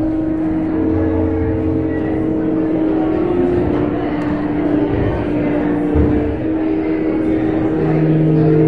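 Church organ playing slow sustained chords, the held notes moving to new pitches every second or two.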